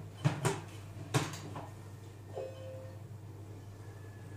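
Lid being fitted and locked onto the steel mixing bowl of a Silvercrest Monsieur Cuisine Connect food processor: a few sharp plastic-and-metal clicks in the first second or so. About two and a half seconds in, the machine gives a short electronic beep.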